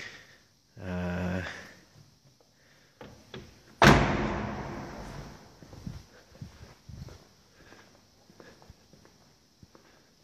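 A Lamborghini Gallardo Spyder's car door shut just before four seconds in: a single loud slam that rings on in the echo of a concrete underground garage. Faint footsteps follow.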